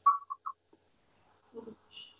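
Short, clipped fragments of delayed, echoing speech from the livestream playing back through the call during the first half-second, then a mostly quiet gap with faint murmurs near the end.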